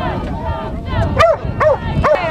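A dog barking in short, high yips, two in quick succession in the second half, over the chatter of a crowd.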